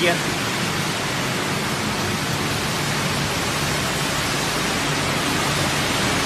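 Steady rushing hiss of a running continuous crayfish fryer line, with axial cooling fans blowing over the conveyor of fried crayfish.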